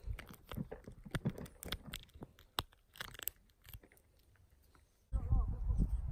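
Fingers handling something right at the microphone: a run of small crackling clicks and rubs. About five seconds in, this gives way abruptly to a loud low rumble of wind buffeting the microphone.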